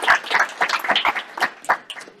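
Audience applauding, the clapping thinning out into a few separate claps and dying away.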